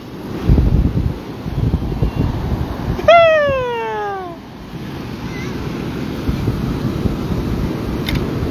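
Wind buffeting the microphone over breaking surf, with one long, falling cry from a man's voice about three seconds in.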